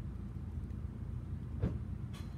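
A steady low background rumble, with one brief soft click near the end.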